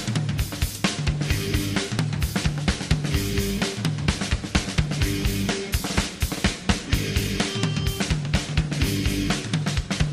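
Recorded punk rock song, instrumental opening: a drum kit plays a busy beat with snare and cymbal hits under a low riff that repeats about every second and a half, with no singing.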